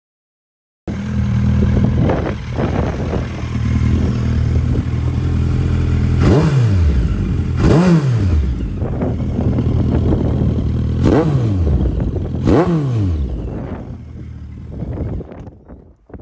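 2014 Suzuki GSX1250FA's inline-four engine idling, with four quick throttle blips, each a rising then falling engine note, in two pairs about a second and a half apart. It cuts in suddenly about a second in and fades out near the end.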